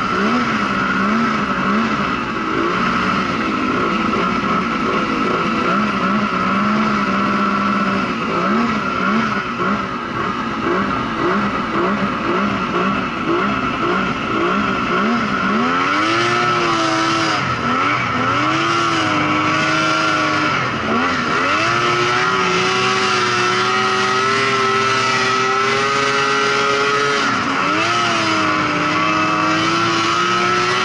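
Snowmobile engine revving, rising and falling in quick throttle blips for about the first half, then held at higher revs with a few slower dips and climbs, over a steady higher whine.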